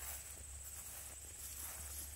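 Insects trilling steadily in one thin, high tone, over a faint low steady rumble.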